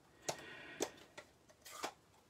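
A few light clicks and taps of hard plastic craft supplies being handled on a desk, about four spread over two seconds, with a faint rustle between them.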